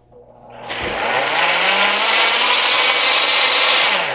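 High-powered countertop blender starting up on a liquid kale shake. Its motor hum rises in pitch for the first couple of seconds, then runs steady and cuts off near the end. It is a short, deliberate burst to mix in added powders without whipping the shake into foam.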